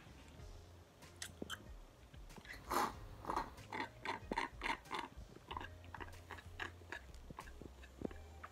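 Sucking juice from a juice box through a straw: a run of short sips about three a second, loudest a few seconds in and fading out toward the end.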